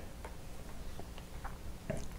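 Quiet room with a low steady hum and a few faint, light ticks at uneven intervals.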